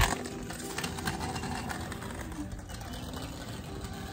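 Small hard wheels of a kick scooter rolling on asphalt, a steady rumble.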